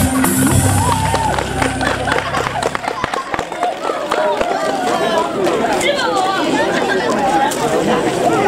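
Recorded backing music playing out and ending about three seconds in, followed by the chatter of an outdoor crowd's many voices.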